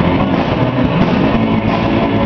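Live surf rock band playing loudly: electric guitars and a drum kit, continuous with no breaks.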